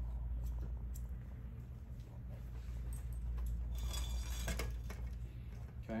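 Barber's shears snipping wet hair held between the fingers: a few small metallic snips, busiest about four seconds in, over a steady low hum.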